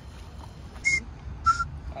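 Two short, loud whistled notes, the first higher and the second lower, about two-thirds of a second apart.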